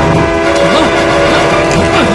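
Diesel locomotive approaching along the rails, with several steady tones held throughout.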